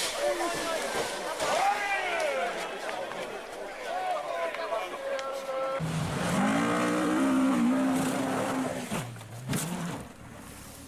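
Rally car engines revving, their pitch rising and falling for the first several seconds, then one held at a steady high rev for about three seconds before dropping away, with spectators' voices mixed in.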